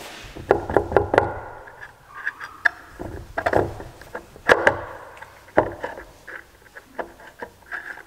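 Metal planter gauge wheel arms and their fittings being handled and fitted onto rubber-tired gauge wheels on a workbench: irregular clunks and knocks, a few at a time, some sharper than others.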